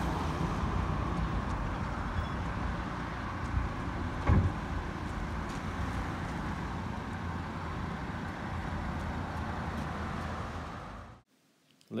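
Rapid DC electric-vehicle charger running during a charge session: a steady low hum with a rushing noise over it, and a single knock about four seconds in. The sound cuts off abruptly near the end.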